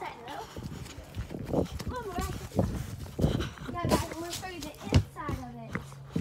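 Children calling out in short high-pitched shouts among footsteps running over dirt and grass and knocks of a handheld phone, with a sharp thump about five seconds in.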